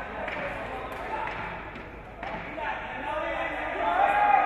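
Several voices talking and calling out at once around a fight ring, with a few dull thuds mixed in.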